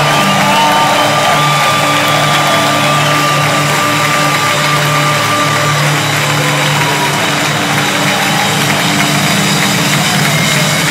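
Live band holding a sustained, droning chord as the song winds down, with audience noise over it in a large hall. One high held note stops about six seconds in.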